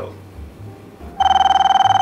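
Wall-mounted door intercom ringing: one steady electronic buzz-tone ring of about a second, starting a little past halfway in, signalling someone at the door.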